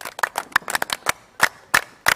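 A small group of people clapping their hands: a scattered run of sharp, separate claps.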